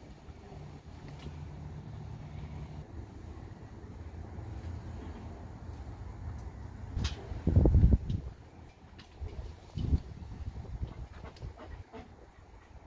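Lemon pieces being cut with a knife and pushed into the neck of a plastic jug, with a sharp click a little before seven seconds in, a loud dull thump just after it and a smaller thump near ten seconds. A low steady rumble runs underneath.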